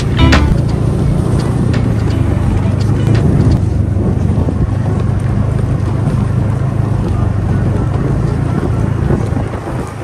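Snowmobile engine running steadily while under way, with wind on the microphone and faint background music underneath.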